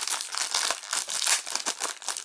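Thin clear plastic wrapping crinkling and crackling as a CD case is handled and worked out of its sleeve, a continuous run of small crackles.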